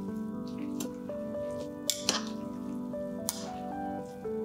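Background music with steady melodic tones, over a few sharp clicks of metal tongs against a glass bowl as shredded raw potato is tossed, two of them close together about two seconds in.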